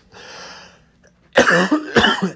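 A man clears his throat with a loud, rasping sound about one and a half seconds in, after a soft breath.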